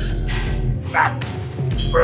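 Background music with a pulsing bass beat; about halfway through, a short strained vocal sound of effort from the lifter mid-set on a lateral raise machine.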